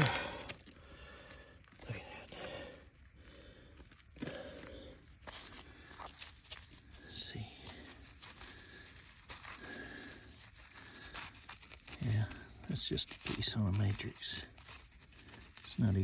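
A sigh, then gloved hands scraping and digging in loose red clay and handling lumps of quartz rock, with scattered short scrapes and crumbling sounds. A man's indistinct voice comes in near the end.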